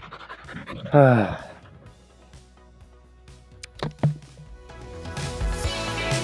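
A man's loud sigh falling in pitch, about a second in. Two brief sharp sounds follow near the middle, and background music fades in over the last second or so.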